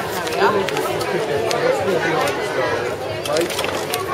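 Chatter of several people talking at once, overlapping voices with no single clear speaker, and a few faint sharp clicks.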